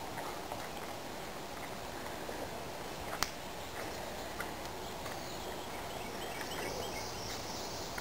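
Quiet outdoor riverside ambience: a steady low background hiss with a few faint bird chirps and a high insect-like buzz in the second half. A single sharp click comes about three seconds in.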